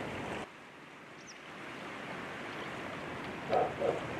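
Steady outdoor ambient noise, an even wash, with a faint high chirp about a second in and two brief louder sounds near the end.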